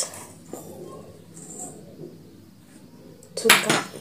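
A few faint, light clinks and knocks of a metal spoon and plastic containers as ingredients are spooned into a plastic mixing bowl. A woman's voice speaks briefly near the end.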